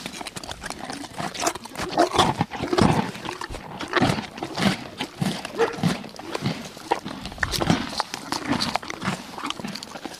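Zebras calling: many short, pitched calls follow one another irregularly throughout.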